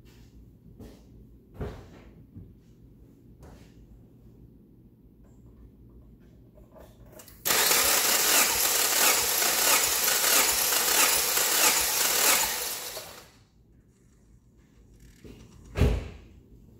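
2004 Subaru Forester flat-four engine cranking over on its starter for about five and a half seconds without firing, for a compression test with a gauge in a spark plug hole. The cranking starts abruptly, runs with an even pulsing and fades out. A single thump follows near the end.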